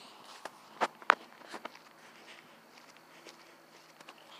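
Footsteps of a person walking on a paved road: a few sharp steps in the first second and a half, then fainter.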